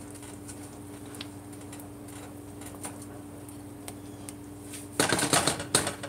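Silicone spatula stirring thick porridge in a metal pot: a few faint taps, then about five seconds in, a run of loud scraping and knocking against the pot. A steady low hum runs underneath.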